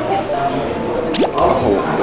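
A cartoon-style water-drop "bloop" sound effect: one quick rising sweep in pitch about a second in, over light background music.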